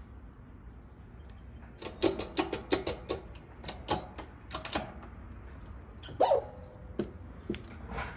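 Hand-lever press and die squeaking and clicking in quick short bursts as a pure copper coin ring is forced through to shape it into a cylinder. About six seconds in there is one louder sharp clink with a brief ring, then a few single clicks.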